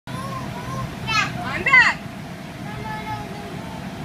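Young children's voices: two short, high-pitched squeals a little after one second in. Under them runs a steady low hum from the blower fan that keeps the inflatable bounce house up.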